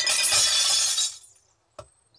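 A box of glass bottles emptied into a bottle bank: a loud crash of glass lasting about a second that dies away, followed by a short click near the end.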